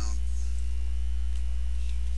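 Loud, steady low electrical mains hum with a faint hiss above it. The tail of a spoken word ends just as it begins.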